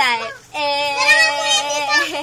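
A toddler's voice: a short falling squeal, then one long, loud, held sing-song note.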